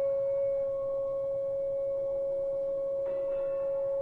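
One steady, high, almost pure tone, held without wavering and carrying faint overtones, in a free-improvisation set. A brief shimmer of higher overtones joins it about three seconds in.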